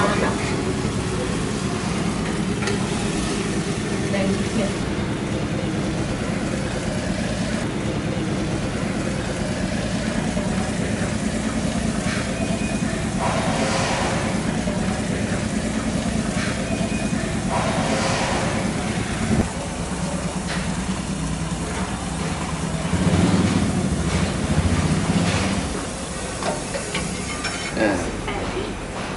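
Liquid nitrogen pouring from a dewar's screw-on withdrawal head into a stainless steel container: a steady sizzling hiss of boiling, spattering liquid and escaping nitrogen gas, swelling louder a few times partway through.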